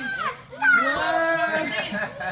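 Raised voices of children and an adult, with one long high-pitched call from about half a second in.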